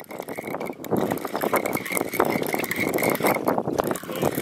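Fishing reel being cranked fast, a dense run of rapid clicks from about a second in until near the end, as a small hooked fish is reeled in.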